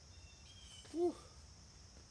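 A man lets out one short breathy "whew" about a second in while hanging in a stretch. Under it runs a steady high drone of insects such as crickets, with faint thin chirps in the first half.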